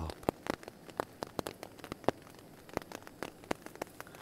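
Rain falling on a tarp overhead, heard from underneath: irregular sharp taps of single drops, several a second, over a faint hiss.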